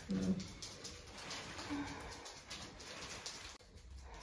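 A woman in labour breathing hard and straining through a contraction, with one short low moan a little under two seconds in.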